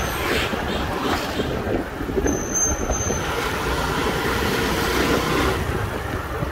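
Honda Wave 110 motorcycle's small single-cylinder four-stroke engine running at a steady cruise, heard from the rider's seat with wind buffeting the microphone.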